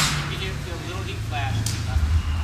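A sharp, hissing burst at the very start that fades over about half a second, with a shorter high burst near the end; people talk faintly in the background over a steady low hum.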